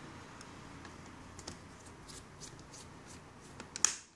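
Light clicks and handling of a screwdriver against the plastic underside of a netbook, with a sharper click near the end as the screwdriver bit meets a case screw.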